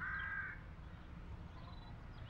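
One harsh bird caw, about half a second long, right at the start, over faint high chirps of small birds and a low background rumble of outdoor ambience.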